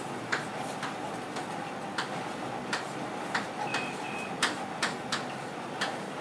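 Chalk writing on a blackboard: a dozen or so irregularly spaced taps and scrapes as the letters are formed, with two short high squeaks about two-thirds of the way through.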